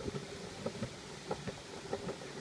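Skateboard wheels rolling on a concrete sidewalk: a faint rumble with scattered small clicks.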